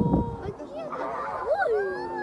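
Onlookers' wordless excited cries and exclamations, with voices rising and falling in pitch, including a longer rising-then-falling cry near the end.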